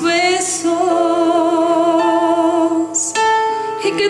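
A woman singing live with instrumental accompaniment: one long held note with vibrato, then a move up to a higher note about three seconds in.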